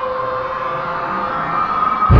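Cinematic intro sound effect: a steady, siren-like pitched drone that swells and edges upward in pitch, building toward a hit.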